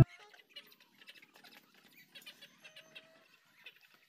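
Chickens feeding from bowls of grain: faint, scattered pecking ticks at irregular intervals, with a brief soft call a little before the end.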